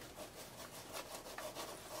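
Pencil scratching on the back of a printed card sheet: a faint run of quick repeated strokes as a cutting mark is drawn.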